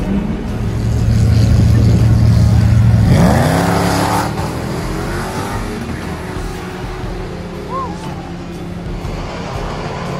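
Drag-racing cars' engines held at steady high revs, then revving up as they launch about three seconds in, the sound fading as they pull away down the strip.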